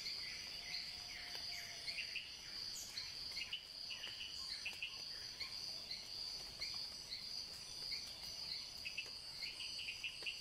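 Tropical forest ambience: a steady high-pitched insect drone with many short, falling bird chirps repeating throughout.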